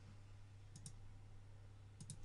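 Near silence over a low steady hum, broken by two quick, faint computer-mouse clicks about three quarters of a second in.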